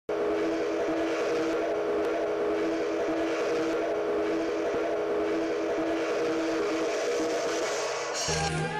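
A held chord of several steady tones, starting suddenly and sustained without change over a faint hiss: an electronic intro sound for a studio logo.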